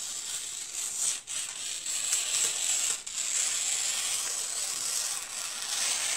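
Scissors cutting through sheet pattern paper in one long continuous cut, a steady crisp rasp with short breaks about a second in and about three seconds in.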